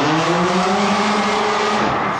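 Racing quad bike's engine running hard at high revs as it jumps, one loud steady note that fades near the end.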